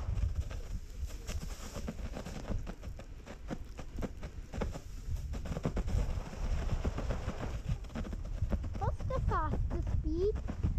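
Sledge sliding down a packed-snow run, a steady low rumble with a rapid, irregular clatter of small knocks and scrapes as it runs over the bumpy snow.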